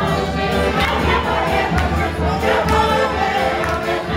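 Polish folk band playing a lively tune while a table of guests claps along and sings.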